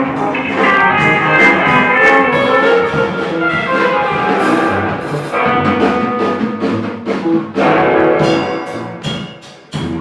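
Live band music: electric guitars and a drum kit with cymbals playing loud, dense sustained notes. Near the end the playing thins out and drops in level.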